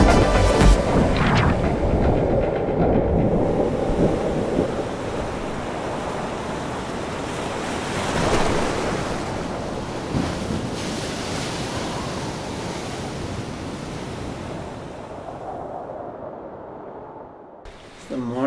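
Ocean surf: a steady rushing wash of breaking waves that swells about eight seconds in and then fades away toward the end. Music cuts off just after the start.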